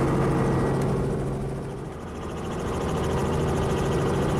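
A small four-seat helicopter's engine and rotor running steadily with a low hum as it lifts off, heard from inside the cabin. The sound dips a little about halfway and comes back up.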